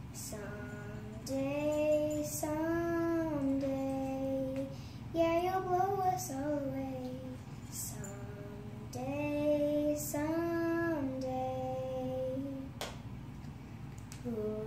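Children singing unamplified in slow, held notes, one sustained pitch after another with short breaths between them.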